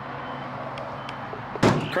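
The door of a 1978 Plymouth Trail Duster pickup being shut: one loud thunk about one and a half seconds in, over steady background noise.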